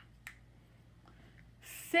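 Quiet room tone with a single faint click about a quarter second in. Near the end comes the hiss of a woman's voice starting a word.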